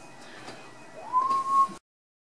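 A person whistling one clear note that slides up and then holds for most of a second; the sound cuts off abruptly near the end.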